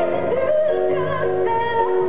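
Live solo performance: a woman singing at a Bösendorfer grand piano, her held, wavering notes over sustained piano chords.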